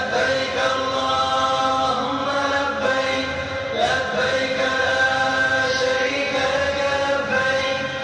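A man's voice reciting Quranic verses of ruqyah in a slow, melodic chant, holding long drawn-out notes with a short break about four seconds in.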